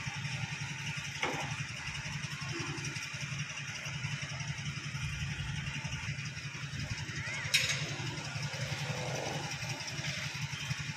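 An engine running steadily at idle, with a sharp click about seven and a half seconds in.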